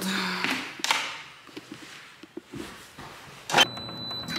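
Footsteps and handling noises, then a sharp knock a little before the end as a door is opened into a room. After the knock a faint steady high tone and a low hum start.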